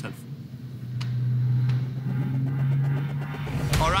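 A steady, low motor-vehicle engine drone lasting a couple of seconds, under background music.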